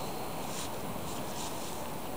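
Wind blowing on the microphone, a steady rushing noise, with a few short soft hisses.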